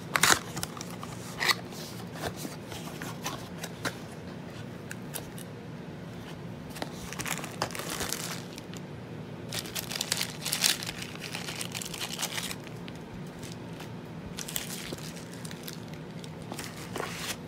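Cardboard box and plastic wrap being handled: a taped box flap worked open and plastic packing crinkling in irregular bursts, loudest just after the start and again about two-thirds of the way through, over a faint steady low hum.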